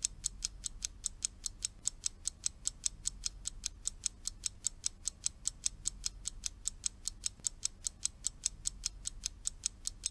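Ticking-clock timer sound effect, fast and even at about five ticks a second, counting down the pause in which the learner repeats the line.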